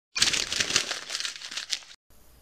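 A sheet of lined notebook paper being crumpled into a ball: a dense run of crackles that starts suddenly, is loudest in the first second and tails off near the end.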